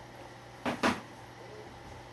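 Two quick, loud mouth sounds, a fifth of a second apart, as a man takes a mouthful of rice from chopsticks and begins chewing.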